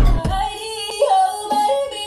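Music: a high melody line stepping between held notes, with a deep bass note fading out at the start.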